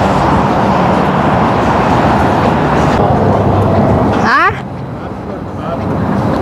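Loud, steady roadside traffic noise that drops off about four and a half seconds in, with a short, steeply rising tone just before the drop.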